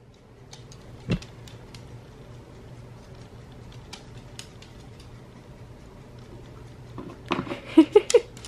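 Small dog moving about a hardwood floor, its claws giving scattered faint ticks and taps, with one sharper knock about a second in, over a low steady hum. A voice comes in near the end.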